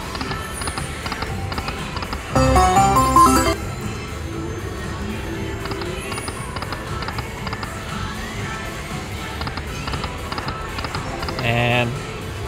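Magic Pearl slot machine spinning its reels: a steady run of electronic tones and small ticks over casino background noise and voices. A louder burst of chiming tones comes about two seconds in, and a shorter one just before the end.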